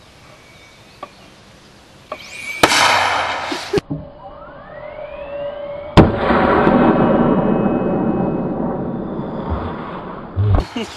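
82mm Soviet mortar firing: a sharp, loud crack about six seconds in, followed by several seconds of loud, slowly fading rushing noise, with a shorter loud burst a few seconds earlier. It is a weak shot: the round travels only about four feet from the tube.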